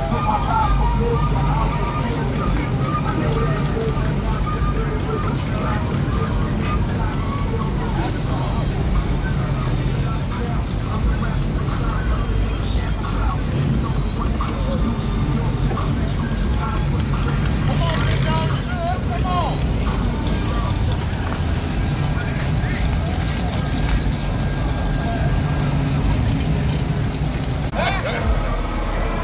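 Lowrider cars rolling slowly past at low speed, their engines making a steady low sound, under scattered crowd chatter and music playing from a car stereo.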